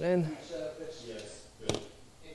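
A man's voice briefly, then a single sharp knock near the end.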